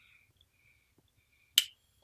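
Faint, short draws on a tobacco pipe as it is puffed, then one sharp click about one and a half seconds in.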